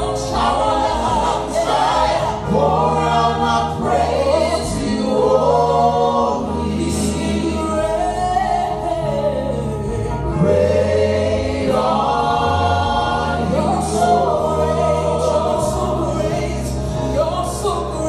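Live gospel worship song: a team of male and female singers with microphones singing together over sustained keyboard chords.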